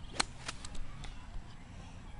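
A single sharp crack of a strike just after the start, followed by a few fainter clicks.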